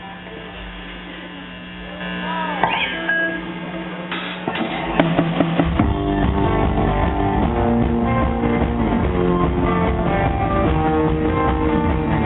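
Live indie rock band with electric guitars and drums starting a song. Amplifier hum and a few loose guitar notes and slides come first, then the full band comes in about halfway through and plays on steadily, louder.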